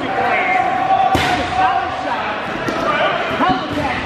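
Dodgeballs being thrown and striking in a gymnasium, one sharp smack about a second in and a few lighter knocks near the end, over players' voices calling out.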